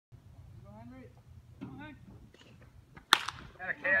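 Baseball bat hitting a pitched ball: one sharp crack about three seconds in, with a brief ring, followed by spectators shouting. Faint voices call out before the hit.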